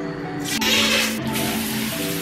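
Shower water spraying in a steady hiss, starting about half a second in after the mixer lever is turned on, over background music with steady notes.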